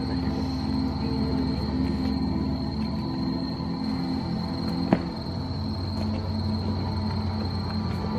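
Ambient installation music: a steady, layered low drone with a thin high tone held above it. A single sharp click comes about five seconds in.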